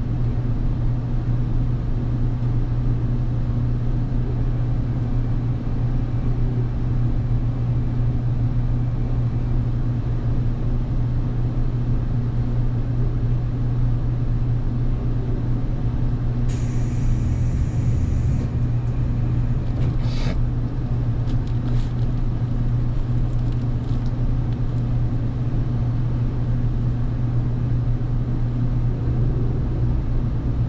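A limited express electric train standing at a station, its onboard equipment giving a steady low hum. A short hiss comes about 17 seconds in, and a single click follows about 20 seconds in.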